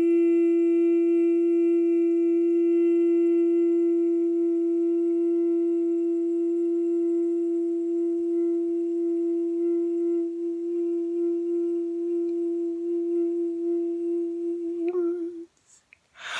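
A single long drone note held at one steady pitch with a stack of overtones, slowly fading, then wavering briefly and stopping about fifteen seconds in.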